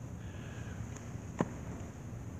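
Handling noise from a clip-on lapel microphone being fitted at a shirt collar: a low steady hum and hiss, with one sharp click about one and a half seconds in.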